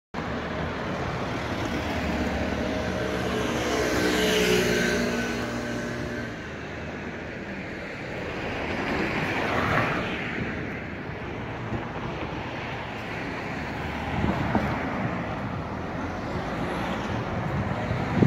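Street traffic: a motor vehicle's engine passes close, loudest about four to five seconds in, and another vehicle goes by around ten seconds in.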